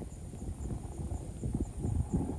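Thunder rumbling low with irregular crackles that build near the end. Under it, a faint high insect chirp repeats a few times a second.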